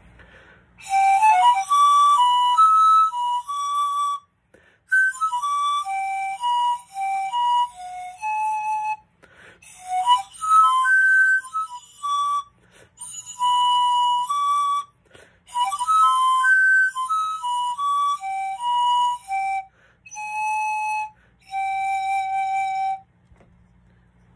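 Ecuadorian rondador, a pan flute of reed similar to bamboo, played in short melodic phrases of quick, clear notes with breathy air noise, with brief pauses between phrases.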